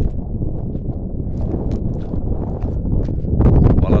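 Wind buffeting the phone's microphone: a steady low rumble that gets louder near the end, with a few faint ticks.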